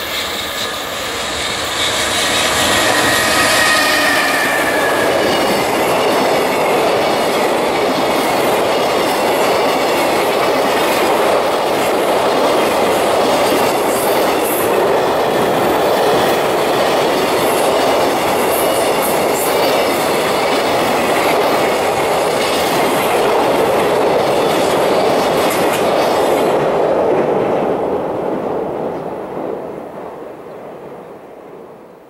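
A JR Freight EF210 electric locomotive and its long container freight train passing close at speed, a loud steady rush of wheels on rail with clickety-clack over the rail joints. A high whine sounds in the first few seconds. The noise builds as the train arrives, holds while the container wagons roll by, and fades away in the last few seconds.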